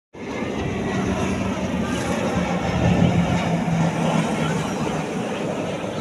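Grob G 120TP turboprop trainer's Rolls-Royce 250 engine and propeller droning overhead in flight. The sound carries a low steady tone that drops slightly in pitch and fades after about four and a half seconds, and is loudest about three seconds in.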